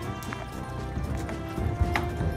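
Background music, with a Percheron draft horse's hooves thudding on a stock trailer's loading ramp as it walks in, the heaviest steps near the end.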